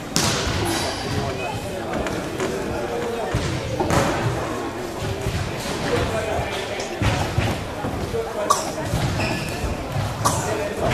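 Thuds of gloved punches and kicks landing and feet on the ring canvas during a kickboxing bout, a few sharper blows standing out, over voices in a large hall.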